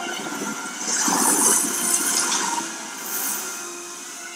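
Film soundtrack of a storm at sea: rushing wind and crashing waves around a fishing boat, swelling loudest a second or two in and easing toward the end.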